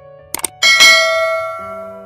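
A quick double click followed by a bright bell ding that rings out and fades over about a second: the subscribe-button click and notification-bell sound effect.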